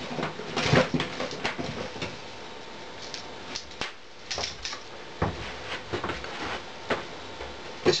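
Irregular light clicks and knocks of hands handling things on a board while a power adapter's cable is picked up, over a faint steady hiss.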